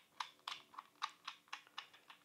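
Faint, irregular clicks of metal camera-rig parts, about ten in two seconds, as a side handle's mounting screw is turned by hand into a monitor's threaded mount.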